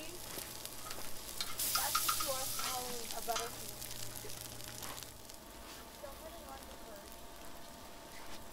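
Slices of egg-dipped French toast sizzling on a Skottle propane disc griddle. The sizzle swells about a second and a half in, as the slices are turned, then fades after about five seconds.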